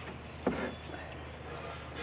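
A wire brush handled against the steel rim of a spoked wheel: one sharp knock about half a second in, then faint scratching.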